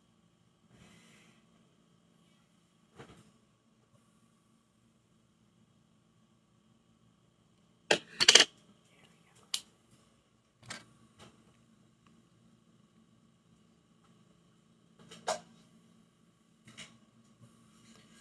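Scattered small clicks and taps from makeup items being handled and set down, with the loudest pair about eight seconds in. A faint steady electrical hum runs underneath.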